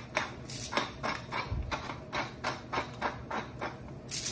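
Hand-twisted pepper mill grinding peppercorns: an even run of rasping clicks, about four a second.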